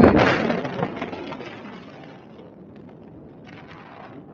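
Wind buffeting an action camera's microphone in flight: a loud rushing gust at the start that fades over a second or so into a steady low wind rush.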